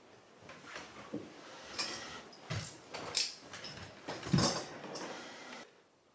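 Wooden chairs being pulled out and sat on: a series of irregular scrapes and knocks, with a heavier thump about two and a half seconds in and the loudest one about four and a half seconds in.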